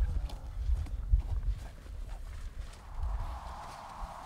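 Strong wind buffeting the microphone: a gusty low rumble with scattered light knocks. About three seconds in, a steady hiss joins it.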